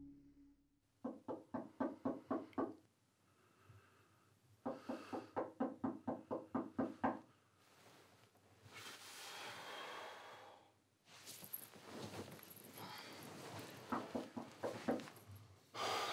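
Knocking on a door: two runs of rapid knocks, about four a second, each lasting a couple of seconds, with a few scattered weaker knocks later.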